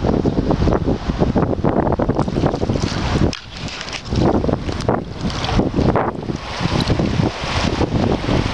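Wind buffeting the microphone in gusts, with a brief lull about three and a half seconds in.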